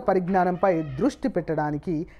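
Speech only: a voice reading aloud at a steady pace, with no other sound.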